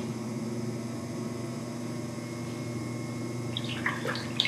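Electric pottery wheel motor running with a steady hum while the wheel spins. A few short clicks come near the end.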